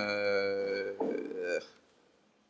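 A man's voice holding a long hesitant "uhh" on one steady pitch for about a second, then a brief further voiced sound, trailing off into quiet room tone near the end.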